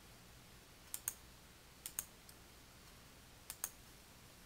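Computer mouse button clicked three times, each click a quick press-and-release pair, about a second apart.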